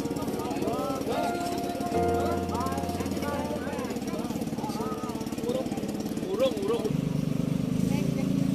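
An engine running steadily with a fast, even chugging pulse, under the voices of people talking.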